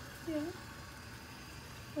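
A pan of water boiling on a gas hob to melt candle wax, heard as a faint steady noise, with a short spoken "yeah" near the start.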